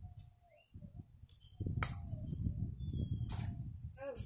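Low wind rumble on the microphone, with two sharp cracks, about two and three seconds in, as a knife splits a dry palm branch.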